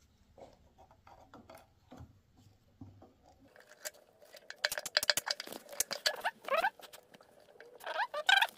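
Handling noises from fitting a new fuel filter into a motorcycle's plastic fuel pump assembly. Faint scattered clicks give way, about halfway through, to a run of sharper plastic clicks and a few short rising squeaks as the parts are pressed together.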